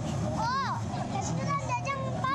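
Young children's high-pitched voices in short, excited exclamations, the clearest about half a second in, over steady background chatter.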